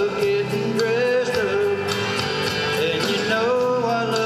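Country song performed live: a man singing held notes into a handheld microphone over instrumental accompaniment.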